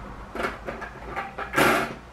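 Plastic blood collection tubes being moved around and set down on a tabletop: a few short knocks and scrapes, with a longer clatter about three quarters of the way through.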